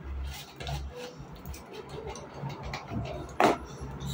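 Clear plastic food container and lid being handled on a table: scattered clicks and knocks, with one loud crackle of plastic about three and a half seconds in.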